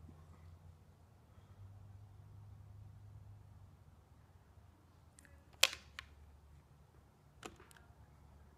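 A handful of sharp plastic clicks from the buttons of a Genie garage door remote being pressed, the loudest about five and a half seconds in, over a faint low steady hum.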